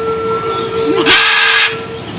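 A steady, whistle-like tone held throughout, with a short harsh squawk from a blue-and-gold macaw about a second in.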